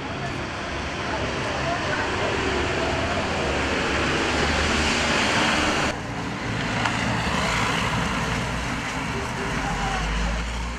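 Street noise of passing road traffic, with voices murmuring underneath. The sound changes abruptly about six seconds in.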